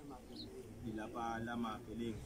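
A man's voice speaking faintly and indistinctly, with a short high bird chirp about half a second in.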